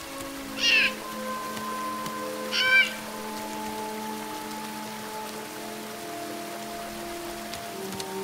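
Black bear cub crying out for its mother twice, short high-pitched calls about a second and two and a half seconds in, over background music of long held notes.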